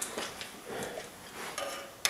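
Faint handling noise: a few small clicks and soft rustles as a steel tape measure is moved into place against a copper conductor head.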